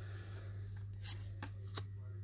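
Trading cards being handled in a hand-held stack, the front card slid off and tucked behind, with four or five light card ticks about halfway through. A steady low hum runs underneath.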